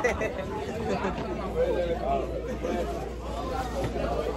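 Indistinct chatter of several people talking in the background, with no single clear voice.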